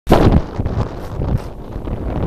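Strong wind buffeting the camera microphone: a loud gust in the first half-second, then an irregular low rumble.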